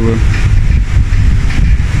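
Wind buffeting the microphone: a loud, low, fluttering rumble.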